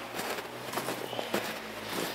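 Footsteps walking through deep snow, a run of soft, irregular steps.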